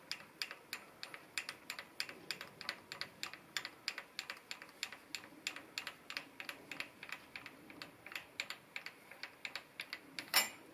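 Light, sharp clicks repeating about four times a second from a milling machine's rotary table as it is turned by hand, rotating an aluminium cover under the end mill.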